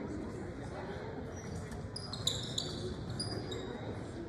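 Murmur in a large gym, with a few short high squeaks of sneakers on the hardwood court about two seconds in.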